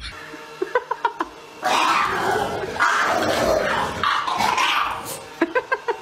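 A small French bulldog puppy yapping at a large fluffy dog in short, sharp high barks, a few about a second in and a quick run near the end. Between them come two longer, louder stretches of rough noise.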